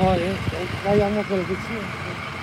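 A person's voice speaking quietly and indistinctly, in two short stretches, over a steady haze of street traffic noise.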